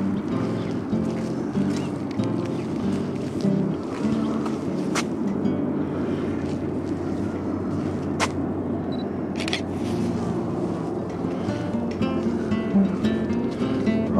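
Background music played on acoustic guitar, with a steady run of strummed and picked notes.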